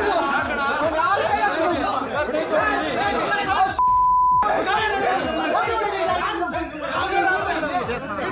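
A crowd of men arguing, many agitated voices talking over each other in a scuffle. About four seconds in, a single steady beep lasting about half a second replaces the voices: a broadcast censor bleep over one word.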